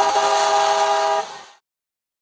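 A car horn sounds one steady blast of several tones together, lasting a little over a second, then fades out into silence.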